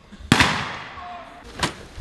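Two gunshots from rifles firing blanks, about one and a half seconds apart. The first is the louder and rings on in a long echo.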